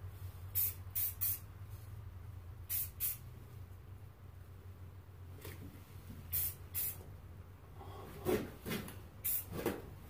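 Aerosol spray-paint can hissing in short bursts, mostly in pairs, a few times over the stretch: black paint being misted on lightly to dull a camouflage pattern.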